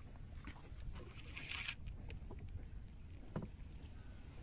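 Small handling sounds in a wooden boat over a low rumble: a short rustle about a second in, a few light clicks, and a single hollow knock a little over three seconds in.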